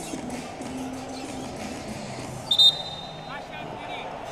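Arena crowd murmur, with one short, sharp referee's whistle blast about two and a half seconds in.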